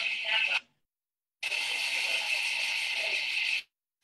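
Microdebrider and suction running during endoscopic sinus surgery, heard as a steady high whirring hiss through a computer speaker and a video call. It cuts out twice, for under a second each time.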